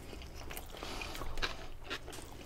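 Close-miked chewing of a mouthful of sushi burrito, with irregular wet mouth clicks and smacks.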